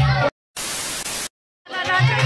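Dance music cuts off abruptly. After a gap of dead silence comes a burst of even static hiss lasting about three quarters of a second, then silence again. The music fades back in near the end, a break typical of an edit or a recording glitch.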